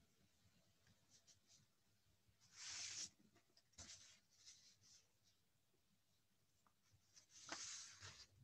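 Near-silent room tone with two short, faint rustles, one about two and a half seconds in and one near the end, and a few soft clicks between them.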